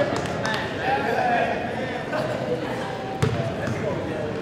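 Background voices in a gymnasium, with a basketball thumping on the hardwood court a few times; the sharpest thump comes a little past three seconds in.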